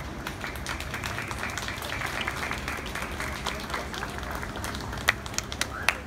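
Audience applauding, a dense patter of many hands clapping with voices mixed in, and a few sharp, louder claps near the end.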